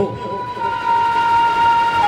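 A steady, high-pitched held tone with fainter overtones above it, stepping down slightly in pitch about half a second in and again near the end.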